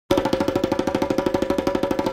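A fast, even drum roll of about a dozen strokes a second over a steady ringing tone, as the music starts.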